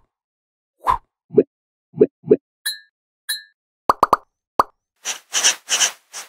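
Cartoon sound effects for an animated logo: a string of short plops, two brief high beeps, a quick run of clicks about four seconds in, and a few hissing whooshes near the end.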